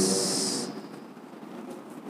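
A man's word ending in a drawn-out hissing 's' through a headset microphone, then a short pause with only faint room tone.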